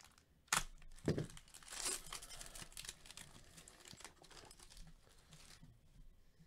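Foil trading-card pack torn open and crinkled by gloved hands: two sharp rips within the first second or so, then a few seconds of crinkling foil that stops shortly before the end.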